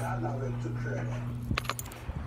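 A steady low hum that cuts off about one and a half seconds in, followed by a brief cluster of sharp, jingling clicks.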